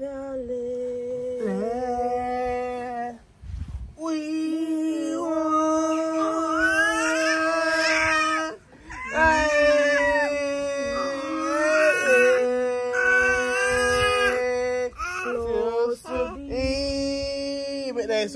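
A woman's voice holding long sung notes of several seconds each, with short breaths between them and a few slides in pitch.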